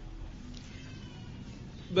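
A faint animal call, short and wavering, about half a second in, over quiet room tone.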